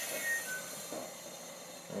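Methane hissing from a hose into an old latex balloon as it starts to fill. A thin squeal drops in pitch over the first half second, and the hiss fades by about a second in.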